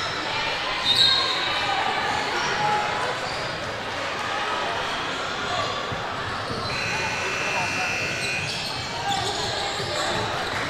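Basketball gym ambience in a large echoing hall: basketballs bouncing on the hardwood floor under a steady chatter of players' and spectators' voices, with a couple of brief high-pitched squeals, about a second in and again around seven seconds in.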